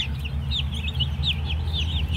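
A flock of newly hatched chicks peeping all together: many short, high chirps several times a second, overlapping, over a steady low hum.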